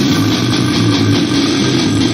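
Slamming brutal death metal: loud, dense, heavily distorted electric guitars and bass playing.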